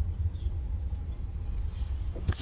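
Steady low rumble of a car heard from inside the cabin, engine and road noise, muffled by a phone lying face down.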